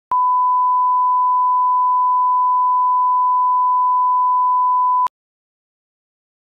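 Test tone played over colour bars: one steady, unwavering beep at a single pitch. It starts abruptly and cuts off suddenly about five seconds in.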